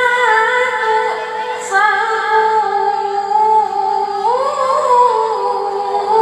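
A girl's voice reciting the Qur'an in melodic tilawah (qira'ah) style into a microphone, drawing out long held notes with ornamented turns; about four seconds in, the melody climbs to a higher note before settling back.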